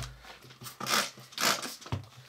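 A Windex pump-spray bottle squirted three times in quick succession, short hisses, after a soft knock at the start.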